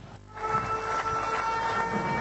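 A ceremonial siren starts about half a second in and holds a steady, horn-like tone. It marks the ceremonial start of construction as the button on the podium is pressed.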